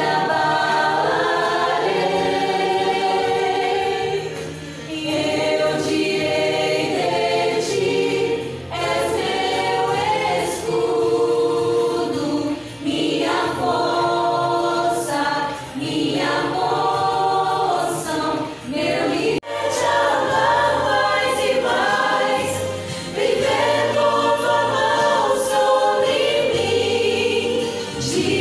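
Small church choir singing a worship song in phrases of a few seconds each, with short breaths between them. There is an abrupt edit in the audio about two-thirds of the way through.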